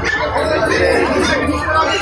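Several people talking at once, overlapping chatter.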